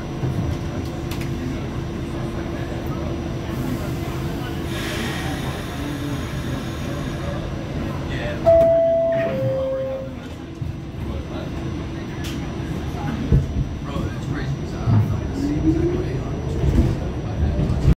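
Interior of an R68 New York City subway car: the train's steady rumble with a held hum, then about eight and a half seconds in a two-note descending door chime sounds, followed by scattered knocks and rattles.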